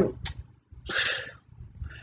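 One short, noisy breath from the woman about a second in, just after a brief hiss.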